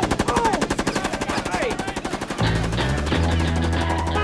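Rapid machine-gun fire in one fast unbroken burst. It stops about two and a half seconds in, and music with a steady bass takes over.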